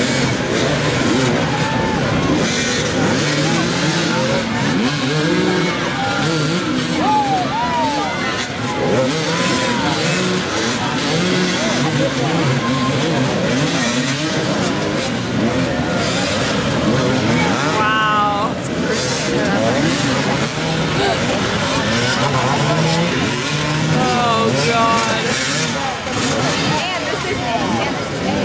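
Several dirt bike engines revving hard at once as they are throttled over obstacles. Many rising and falling revs overlap without a break.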